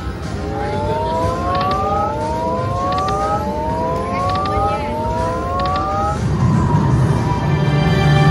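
Aristocrat Timberwolf slot machine's electronic game sounds during a free-game spin: a series of overlapping rising tones, each climbing for about a second and a half, that stop about six seconds in. Steadier game music follows, with a new chime starting near the end as the reels land a small win.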